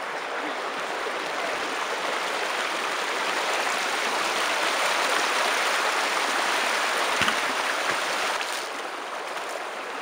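Shallow rocky creek running over small cascades, a steady rush of water that swells toward the middle and eases again near the end. A single short knock sounds a little after seven seconds in.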